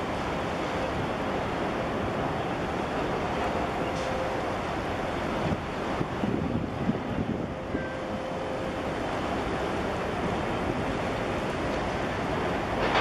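Steady rushing of wind on the microphone mixed with harbour water washing, with a few louder irregular buffets between about five and eight seconds in.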